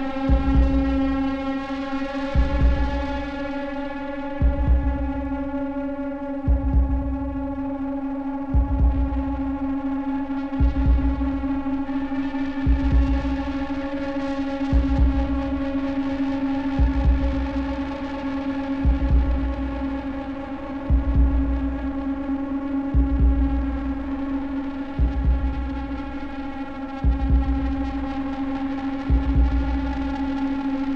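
Minimal electronic music: a sustained droning chord held steady, under a deep low pulse that repeats evenly about every two seconds.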